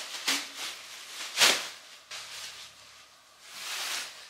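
Thin white plastic bag rustling and crinkling as it is handled and spread out, in several irregular bursts, the loudest about a second and a half in, with a longer swelling rustle near the end.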